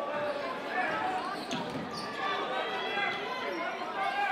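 A basketball being dribbled on a hardwood gym floor, over the murmur of voices from the crowd in the gym.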